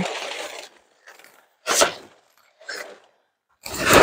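Polyester tent fabric rustling and scraping in several short bursts as a pop-up hub tent's side is pulled out, the loudest burst near the end.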